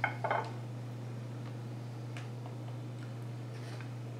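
A steady low electrical hum runs underneath, with faint handling of soft tortillas in a glass baking dish: a couple of light taps in the first half second, then only a few very faint ticks.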